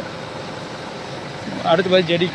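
Steady, even background noise with no distinct events during a pause in speech; a man's voice starts again about a second and a half in.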